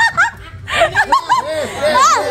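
Several people laughing in quick, repeated bursts, with a short pause about half a second in before the laughter picks up again.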